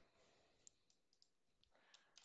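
Near silence with a few faint, scattered clicks from someone working a computer while a misspelled word is corrected in a text editor.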